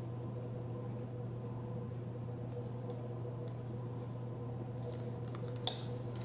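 Fingertips pressing and smoothing a paper sticker onto a planner page: a few faint ticks, then soft scratchy rubbing and one sharp tap near the end, over a steady low hum.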